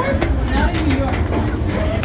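Indistinct voices of people close by, over a steady low rumble.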